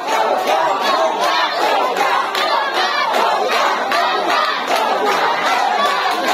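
A large street crowd shouting at once, many voices overlapping in a loud, unbroken din.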